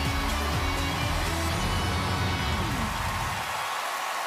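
Television talent-show opening theme music with a heavy bass line. The bass drops out near the end, leaving audience applause.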